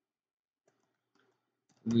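A few faint computer-keyboard keystrokes clicking while code is typed. A voice starts speaking near the end.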